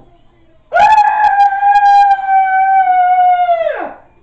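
A person's long, loud, high-pitched scream, held at nearly one pitch for about three seconds, sagging slightly and then dropping away sharply at the end.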